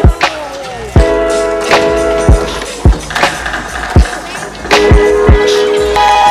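Music with a deep kick drum that drops in pitch, played over skateboard sounds: urethane wheels rolling on asphalt and a board sliding along a wooden ledge.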